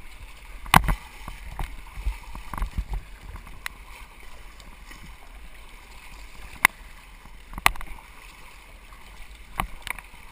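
Double-bladed paddle strokes driving an inflatable kayak through river water, over a steady wash of moving water. A handful of sharp knocks cut through, the loudest about a second in and two more near the end.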